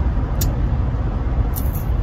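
Steady low rumble of road and engine noise inside a moving car's cabin, with a brief tick about half a second in.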